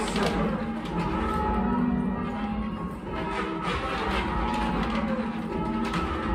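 A ring of eight church bells being rung full-circle in call changes, a steady run of bell strikes heard from the ringing chamber below the bells.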